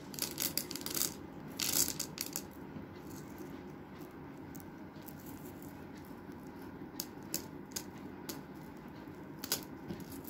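Small porous refractory granules dropped into a plastic measuring cylinder, clicking and rattling against its walls. There is a quick run of clicks over the first two seconds or so, then a few scattered single clicks later on.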